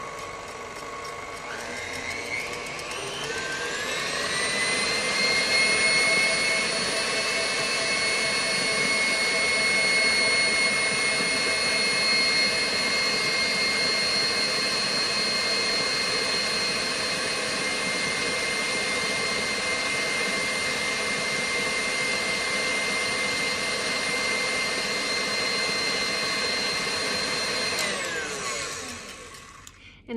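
Stand mixer with a whisk attachment beating meringue at high speed toward stiff peaks. Its motor whine climbs in pitch as it speeds up over the first few seconds, runs steadily, then winds down and stops near the end.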